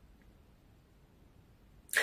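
Near silence: faint room tone in a pause between spoken sentences, with a man's voice starting again right at the end.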